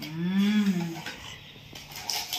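A short closed-mouth hum, like a drawn-out "mmm", rising and then falling in pitch over about a second.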